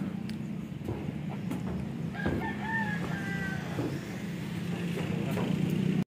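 A rooster crowing once: a single drawn-out call that starts a little past two seconds in and lasts about a second, over a steady low hum.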